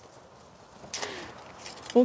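A corkscrew working at the cork of a wine bottle: a short scraping hiss about a second in that fades away within a second.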